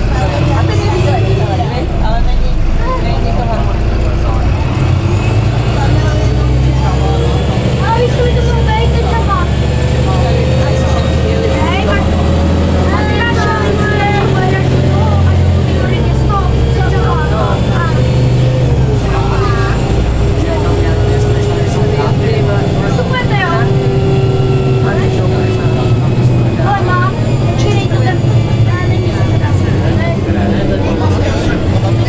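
Cabin sound of a Karosa B961 articulated diesel city bus under way: a steady low engine drone with a drivetrain whine that slowly rises and falls in pitch. Passengers talk over it throughout.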